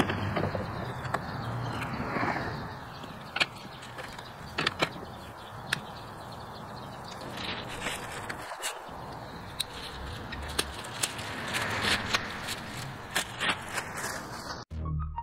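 Scattered light clicks and knocks as the electric lawn mower's folding handle is lifted and swung up into place, over steady outdoor background noise.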